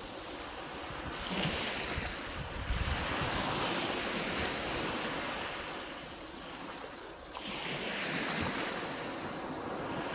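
Small waves breaking and washing up a sandy beach, the surf swelling twice: a little over a second in and again a little after seven seconds. Wind buffets the microphone with low rumbles in the first few seconds.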